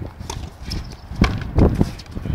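Frontenis rally: the rubber ball struck by racquets and rebounding off the fronton wall and floor, a run of sharp, irregularly spaced knocks, loudest a little past the middle.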